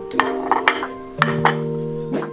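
A metal fork clinking against a plate about five times, over background music with guitar.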